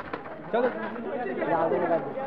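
Football players and onlookers calling out and chattering, several voices overlapping, with a loud shout about half a second in.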